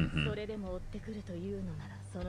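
Speech: a character's line of dialogue from the anime film, quieter than the hosts' voices, with a short murmured "mm" at the start.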